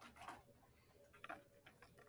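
Very faint, irregular taps and scratches of a pen writing on notebook paper, a handful of short strokes, over a faint steady hum.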